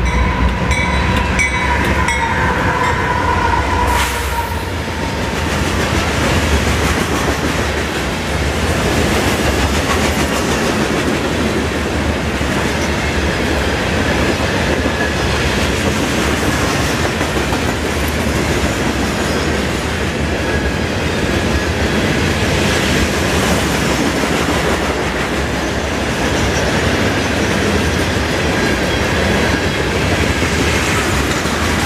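CSX freight train passing close by. For the first few seconds the GE AC4400CW diesel locomotives rumble past with a pitched whine, then open hopper cars roll by with steady wheel-and-rail noise and clickety-clack over the rail joints. Thin wheel squeals come in now and then.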